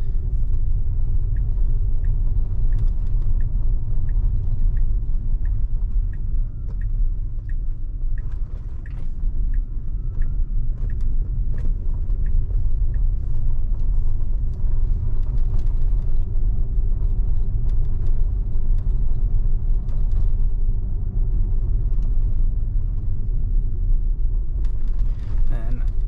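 Steady low road-and-tyre rumble inside the cabin of an electric Tesla Model X driving at low speed. Through the first half a turn signal ticks about twice a second, then stops.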